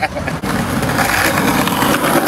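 Skateboard wheels rolling over paving tiles, a steady rolling noise that starts about half a second in.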